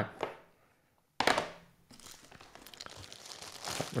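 Hard plastic graded-comic slabs being handled: a short, sudden plastic rustle a little over a second in, then soft crinkling and small clicks that build toward the end.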